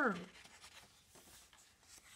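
A page of a hardcover picture book being turned by hand: a faint rustle of paper.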